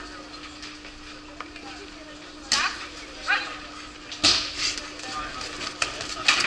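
Two sharp slapping impacts about two seconds apart, the second the louder, over faint voices and a steady hum.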